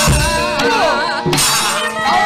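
Gamelan accompaniment to a wayang kulit fight, with the dalang's kecrek, metal plates on the puppet chest, clashing in sharp metallic crashes at the start and again about a second and a half in, over a low drum thump and a wavering melodic line.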